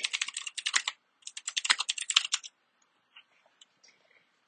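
Computer keyboard typing: two quick runs of key clicks as a short terminal command is typed, stopping about two and a half seconds in, followed by a few faint ticks.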